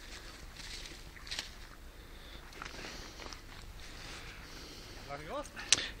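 Quiet, faint rustling and a few light knocks of a large pike being held down and handled on dry grass and leaf litter, with a short murmur of voice near the end.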